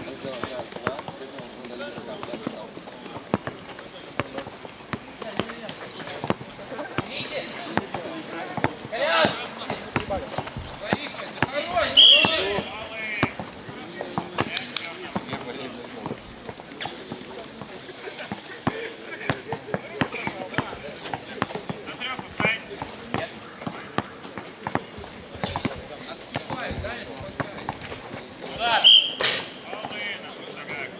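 Basketball bouncing on a hard court in irregular thuds during play, with players' shouts and voices over it. The loudest shouts come about twelve seconds in and near the end.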